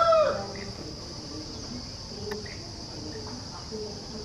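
The falling end of a rooster's crow in the first half second, then a steady high-pitched insect drone with faint scattered calls.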